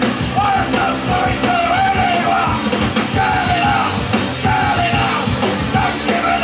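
Live punk rock (Oi!) song: distorted electric guitars, bass and drums played hard, with a shouted lead vocal.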